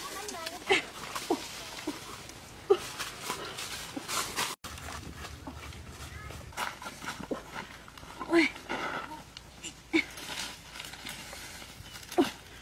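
A person's voice in scattered short syllables over faint outdoor background sound.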